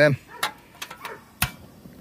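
Several small clicks and one sharper click about a second and a half in, from a Campingaz Camp'Bistro 2 portable gas stove as a gas cartridge is locked into place.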